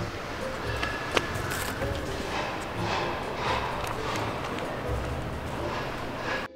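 Footsteps on pavement outdoors, soft and about two a second, over steady outdoor background noise, with background music under it.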